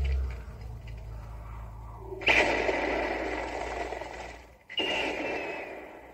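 Film sound-effect explosions played back from a screen: a sudden blast about two seconds in that fades over about two seconds, then a second blast with a falling hiss shortly before the end.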